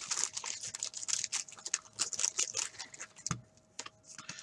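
Wax-paper wrapper of a 1985 Topps hockey wax pack and its plastic sleeve crinkling in the hands as the pack is unwrapped: a quick, uneven run of small dry crackles, with a soft thump a little past three seconds.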